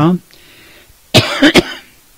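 A man coughs and clears his throat close to the microphone, a short, loud burst of two or three sharp hacks about a second in, after a brief pause in his speech.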